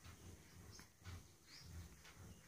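Near silence: room tone with faint, irregular low bumps.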